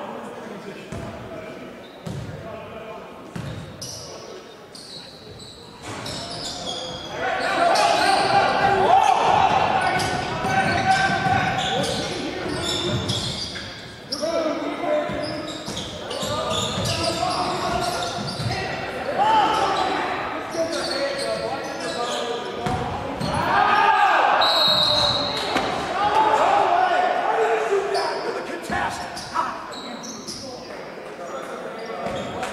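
Basketball being dribbled on a hardwood gym floor, with players' and spectators' voices shouting and echoing in the hall. The voices grow loud from about seven seconds in.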